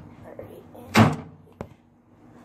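A single loud knock or thump about a second in, followed by a short sharp click about half a second later.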